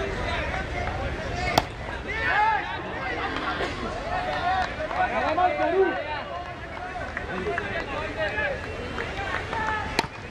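Several voices of players and onlookers calling and chattering across an open cricket ground, overlapping throughout, with one sharp knock about a second and a half in.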